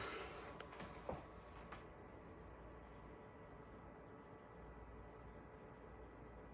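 Goldshell CK Lite crypto miner's cooling fans running steadily at settled speed, heard from a few steps back: a faint, even whir with a few thin steady tones, barely above room quiet. A few light taps in the first two seconds.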